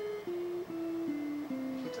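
Telecaster-style electric guitar playing a slow Baroque-style melodic line: about five plucked notes, each held about half a second, stepping downward in pitch.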